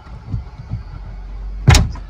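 Handling of a just-unbolted rear wiper motor against the tailgate glass: a few soft bumps, then one sharp knock near the end.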